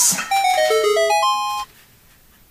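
A short jingle of about eight quick pitched notes, stepping down in pitch and then climbing back up, ending about a second and a half in.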